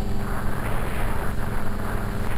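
Steady hum of a TwinStar RC twin's electric motors and propellers in flight, under wind rumbling on the microphone.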